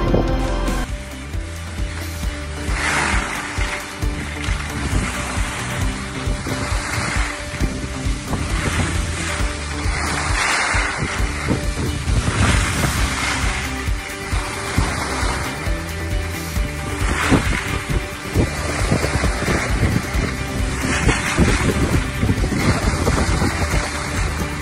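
Skis scraping and swishing over packed snow, swelling with each turn about every two seconds, with wind buffeting the microphone. Background music plays faintly underneath.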